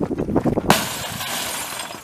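A bowling ball smashing into the screen of an old CRT television: a sudden crash of breaking, shattering glass under a second in, which fades away over about a second.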